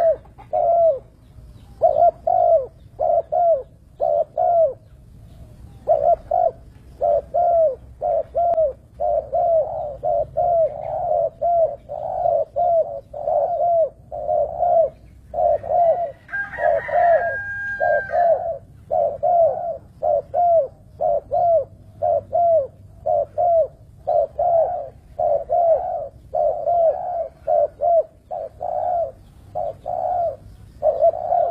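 Spotted dove cooing, short falling coos repeated in quick groups throughout. About halfway through, a brief higher-pitched call breaks in once.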